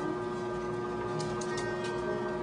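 A steady humming tone over low room noise, with a few light clicks about a second in.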